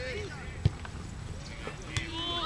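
Outdoor football-match ambience: faint distant shouts from players, with a sharp knock about two-thirds of a second in and another near the end.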